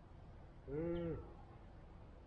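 A single short livestock call, about half a second long and rising then falling in pitch, over a quiet outdoor background.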